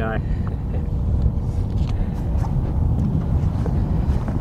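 Wind rumbling on the microphone over choppy lake water lapping, with a faint steady hum underneath.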